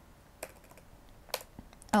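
Computer keyboard being typed on: a few separate keystrokes, the loudest about two-thirds of the way through.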